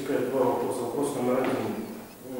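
Speech: a person talking, the words not made out.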